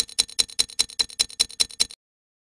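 Clock-ticking sound effect: sharp, even ticks at about five a second, stopping suddenly near the end.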